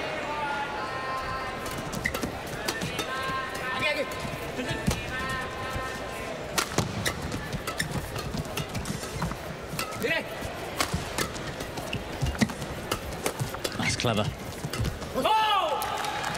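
Men's doubles badminton rally: racquets strike the shuttlecock again and again, sharp hits with hall echo, over crowd noise with chanting in the first few seconds. The crowd's noise swells near the end as the rally finishes.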